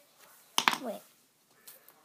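A brief sharp click of crayons being handled over paper about half a second in, then a girl's voice saying "Wait."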